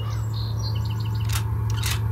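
Scattered faint bird chirps over a steady low hum.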